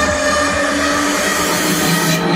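Psytrance track playing over a club sound system, in a breakdown: the kick drum and bass drop out early on, and a swelling noise sweep builds over a held synth tone.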